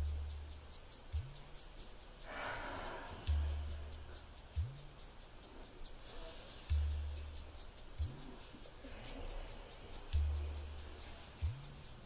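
Soft background music: a low bass note repeating about every three and a half seconds, each followed by a short rising glide, over a steady high ticking. Faint slow breaths sound about two seconds in and again about nine seconds in.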